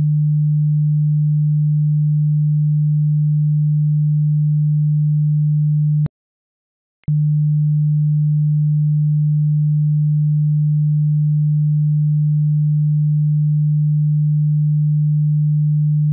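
Steady 150 Hz sine-wave test tone, a single low pure pitch. It cuts out for about a second some six seconds in, then comes back unchanged, with a faint click as it stops and as it restarts.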